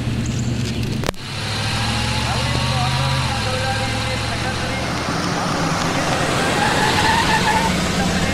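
Van engine running steadily, first heard from inside the cabin as a low drone, which cuts off abruptly about a second in. The van is then heard from outside driving along the road, with engine hum and road noise.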